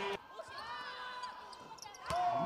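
Basketball game sound on a hardwood court: sneakers squeaking and a ball bouncing, with faint voices in a large arena. The sound drops suddenly just after the start.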